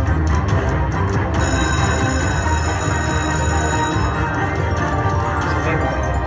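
Video slot machine's bonus music playing steadily through its free spins, with bell-like tones over it.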